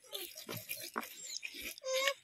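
Soft, irregular wet squelching of thick masala paste being pressed and smeared by hand over a whole tilapia.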